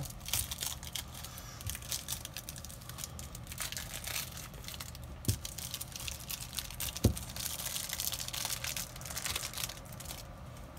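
Plastic wrapping on a sealed deck of trading cards crinkling and tearing as it is picked at and peeled off by hand, stubborn to come off. Two knocks about five and seven seconds in, the second the loudest.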